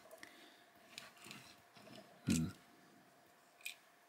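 Faint small clicks and scrapes of fingers handling a diecast toy car and picking at bits stuck to it, with a sharper click near the end. A brief hummed 'hmm' comes about two seconds in.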